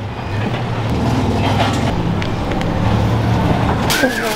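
A steady low engine rumble that swells over the first second and then holds.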